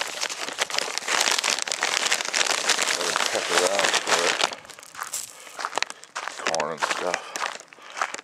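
Crinkling and rustling of a bag of hamster food as it is shaken out onto the ground, dense and continuous for about four and a half seconds, then stopping. Short murmurs of a man's voice come in twice in the quieter second half.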